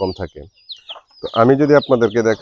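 Free-ranging hens and a rooster clucking, with short high peeps from chicks near the middle.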